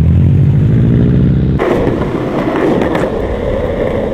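A Subaru WRX STI's turbocharged flat-four engine running low and steady as the car pulls away. About a second and a half in, it cuts abruptly to the steady rolling rumble of skateboard wheels on asphalt, with a few light clicks.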